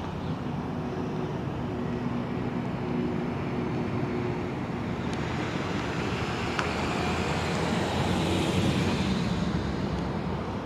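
Steady outdoor engine and traffic noise with a faint hum, swelling louder near the end as a vehicle passes.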